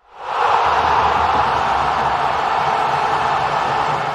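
A loud, steady rushing noise, most likely the closing sound effect, fading in over the first half-second.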